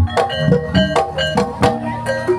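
Javanese gamelan music for an ebeg trance dance: a kendang hand drum beating a quick, steady rhythm under short, ringing notes from struck pitched keys, played loud over a sound system.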